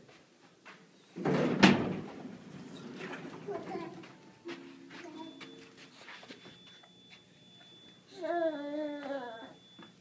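Elevator doors sliding with a loud thud about a second in. A short steady chime follows midway, then a faint, steady high whine. Near the end a toddler sings out a wavering, high-pitched sound.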